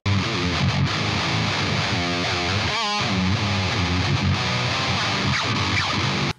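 Music Man electric guitar playing a metal riff that starts abruptly, with a wavering pitch bend about halfway through.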